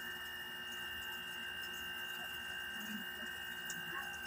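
Quiet room tone: a faint, steady high-pitched electrical whine and hum over light hiss, unchanging throughout.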